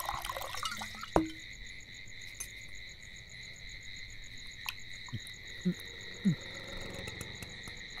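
Night ambience: a steady, high-pitched chorus of insects trilling, with a few faint, short soft knocks.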